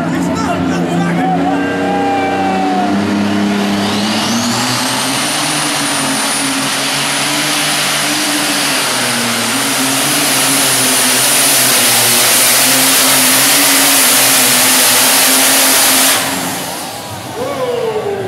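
John Deere superstock pulling tractor's turbocharged diesel engine revving to full throttle under load as it pulls the sled. About four seconds in, a high whine climbs and then holds while the engine runs flat out for some twelve seconds. Near the end the sound cuts off suddenly as the throttle is closed and the engine drops back.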